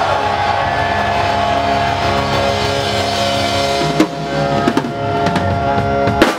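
Live rock band playing on stage: the drum kit and guitars hold a ringing chord, with a few sharp drum hits about four to five and a half seconds in.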